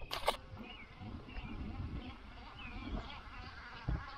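Faint outdoor ambience: a low rumble with a few faint short chirps scattered through it, and a brief sharp knock just after the start.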